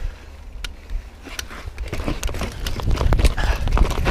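Mountain bike clattering over rough trail, with quick irregular knocks and rattles over a low wind rumble. Quieter for the first second or so, then the rattling grows denser and louder.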